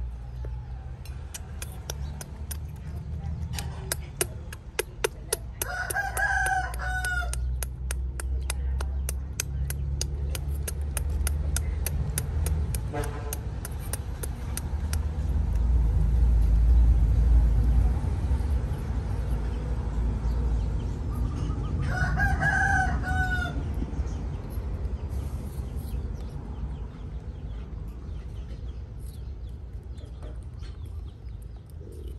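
A rooster crowing twice, once about six seconds in and again a little past twenty seconds, each crow lasting a second or so. A fast run of clicks fills the first half, over a low rumble that swells around the middle.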